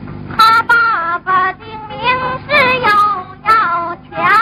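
A woman singing in a high voice in short phrases of held notes that step up and down in pitch, on a thin, narrow-band old film soundtrack.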